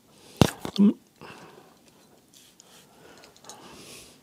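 A sharp click about half a second in, then a brief murmur from a man's voice close to the microphone, followed by faint soft breathing and rustling noises.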